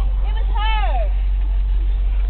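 School bus engine and road noise, a steady low rumble heard from inside the passenger cabin, with a voice briefly heard over it about half a second in.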